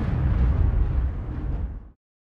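Loud, low booming hit, a dramatic horror sound effect, rumbling and fading, then cutting off abruptly near the end.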